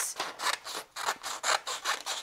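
Paper scissors cutting through a sheet of printer paper: a quick run of short, crisp snips as the blades work along the sheet.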